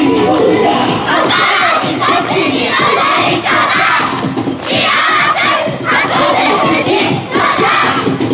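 A large team of festival dancers shouting in unison: a string of loud group shouts coming about every second to second and a half, over recorded dance music.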